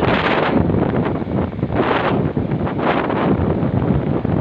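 Wind rushing over a phone's microphone from a moving vehicle, over a steady bed of road and traffic noise. The rush swells at the start, about two seconds in and again about three seconds in.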